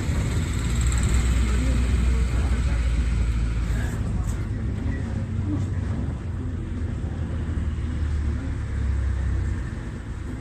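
Steady low engine and road rumble heard from inside a moving vehicle, with higher hiss that eases about four seconds in.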